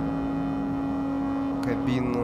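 Live electronic music from synthesizers: one steady held drone note over lower sustained tones, with a couple of sharp clicks near the end.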